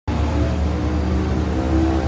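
An engine running steadily nearby, a low hum that holds the same pitch throughout.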